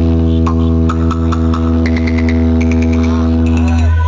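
A loud, steady electronic bass drone with a buzzy stack of overtones, played through a tall DJ speaker tower at a sound-box competition.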